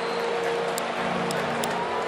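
Boat horns sounding in a long, steady held tone over the background hubbub of a ballpark crowd.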